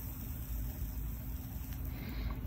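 Steady low background hum, with no distinct events.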